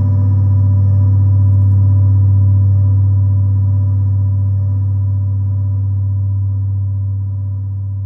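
Electronic music: a sustained low drone holding one pitch, with faint steady higher tones above it, slowly getting quieter.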